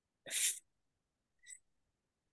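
A short breathy burst of hiss from a person's mouth, lasting about a third of a second, then a faint click about a second later.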